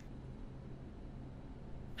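A faint, low, steady hum.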